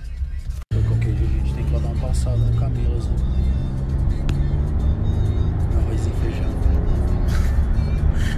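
Steady low rumble of a car's cabin while riding, with music playing over it; the sound cuts out for a moment just under a second in.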